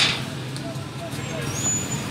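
Outdoor background of faint distant voices over a steady low hum, with the fading tail of a loud rushing burst at the very start.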